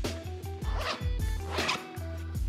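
Zipper on a backpack's front pocket pulled open in two quick strokes, over background music with a steady beat.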